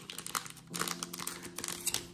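A One Piece Card Game EB-01 booster pack's plastic wrapper crinkling in the hands as the stack of trading cards is slid out of it: a quiet run of small crackles.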